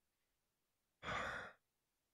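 A man's short sigh, a breathy exhale lasting about half a second, about a second in.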